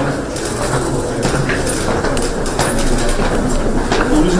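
Busy commotion of a group of people walking together through a corridor: footsteps and shuffling with many short sharp clicks and knocks.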